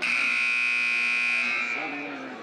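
Gymnasium scoreboard horn sounding one long, steady buzz of about a second and a half, cutting in suddenly and fading out.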